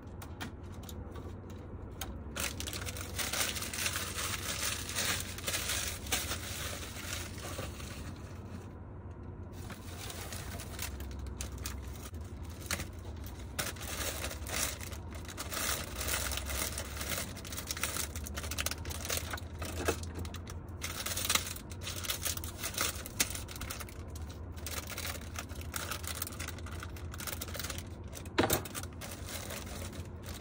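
Plastic rice-cake bag crinkling and rustling as it is handled, with scattered light clicks and a few sharper knocks. A low steady hum runs underneath.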